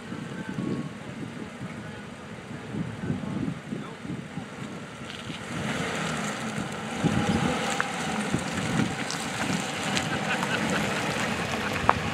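An SUV's engine and tyres on wet pavement as it drives up and pulls alongside, growing louder about halfway through, with wind buffeting the microphone.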